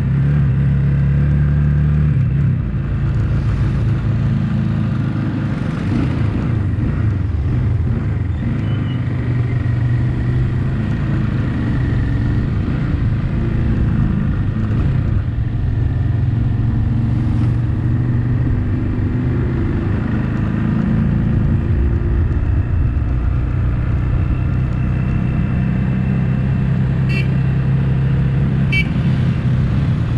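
Small motorcycle's engine running steadily at cruising speed, with road noise. Two brief high chirps sound near the end.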